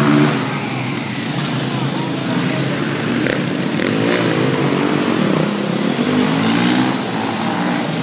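Supermoto motorcycle engines running, their pitch rising and falling as the throttle is blipped, with people's voices mixed in.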